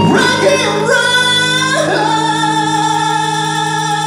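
Live hard rock band with the lead singer sliding up into long held high notes over a sustained guitar and bass chord.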